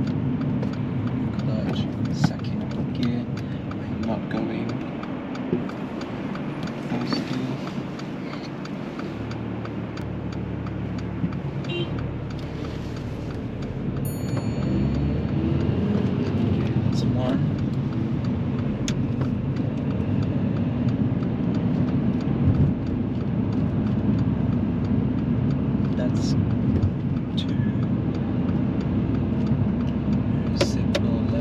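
Engine and road noise inside the cabin of a manual car being driven through a roundabout, with a steady low rumble that grows louder about halfway through as the car picks up speed.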